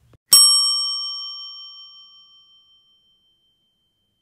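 A single bright bell-like ding, struck once about a third of a second in, ringing out and fading away over about two and a half seconds.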